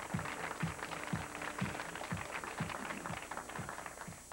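Studio audience applauding over music with a steady low beat, about two beats a second.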